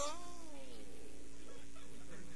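A man's drawn-out exclamation "oh", falling in pitch over about a second, followed by a pause with only a faint steady hum.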